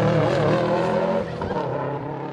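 Subaru Impreza rally car's flat-four engine revving under hard driving, its pitch rising and falling through the gears, growing fainter about a second in as the car goes away.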